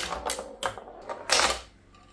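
Homemade pinball machine being played: the flippers snapping from the push buttons and the ball knocking around the playfield, a quick irregular run of sharp mechanical clacks in the first second and a half.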